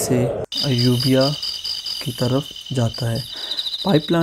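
A steady, high-pitched insect trill from crickets, pulsing rapidly, starts abruptly about half a second in after a brief dropout and keeps on under a man's talking voice.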